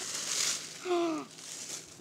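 Paper wrapping rustling and crinkling as a gift package is opened by hand, loudest in the first half-second. A short vocal exclamation, falling in pitch, comes about a second in.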